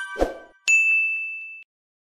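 Outro sound effects: a chime rings out, a short low pop follows, then a bright, clear ding rings for about a second and cuts off abruptly.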